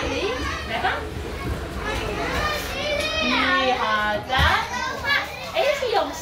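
Several young children's high-pitched voices chattering and calling out at once, overlapping one another.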